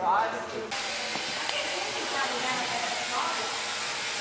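Steady hiss of background noise that starts suddenly about a second in, with faint distant voices.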